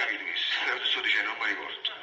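Speech only: a voice talking, which stops shortly before the end.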